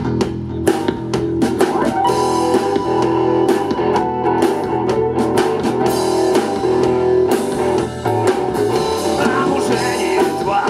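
A rock band playing live: electric guitar and bass guitar over a drum kit, with keyboard, the sustained notes driven by a steady drum beat.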